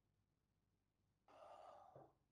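Near silence, then a little over a second in a short audible intake of breath, lasting under a second.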